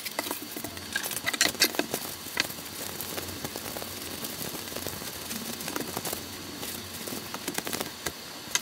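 A few light clicks and knocks as a bottle is handled, then steady soft rubbing and rustling of a cloth wiping a knife's steel blade and wooden handle.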